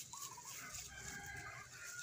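Chickens clucking faintly in the background, a short wavering call early on and a few soft calls after.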